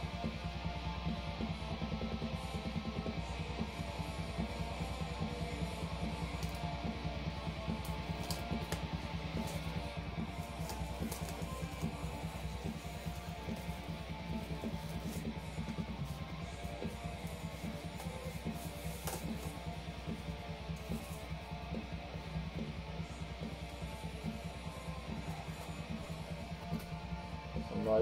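Metal music with electric guitars playing from a vinyl record in the background, steady throughout. Light crinkling and rustling of a record sleeve being handled comes over it, mostly between about 8 and 11 seconds in and again around 19 to 21 seconds in.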